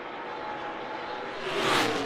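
NASCAR Cup stock cars' V8 engines droning at racing speed, then one car passing close by with a swelling rush near the end.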